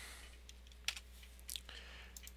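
Faint computer keyboard and mouse clicks: a few short clicks, the sharpest about a second in, over a low steady hum.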